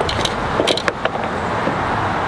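A few short sharp clicks and rattles in the first second, a fishing rod and reel being handled on a wooden dock, over a steady rushing background noise.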